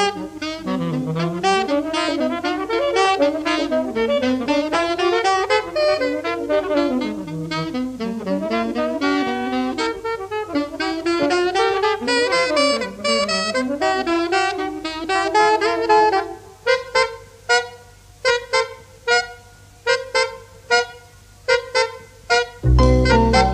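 A saxophone plays a fast, winding jazz solo line over a small modern-jazz group, from a 1960s BBC radio recording. About sixteen seconds in, the long line gives way to short, separated notes with gaps between them.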